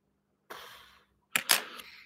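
A brief hiss that fades out, then two sharp clicks close together, the second one the loudest.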